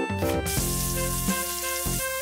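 Food sizzling in a hot pan on the stove, an even hiss that comes in about half a second in, under background music.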